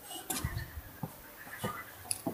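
Footsteps and handheld-camera handling noise while walking: a few soft, irregular thumps and clicks.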